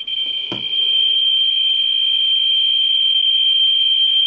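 Geiger counter's audio sounding a continuous high-pitched buzz as its probe sits on a radium-dial clock: the count rate is so high that the clicks run together into one steady tone. A single knock comes about half a second in, and the buzz grows louder just after it.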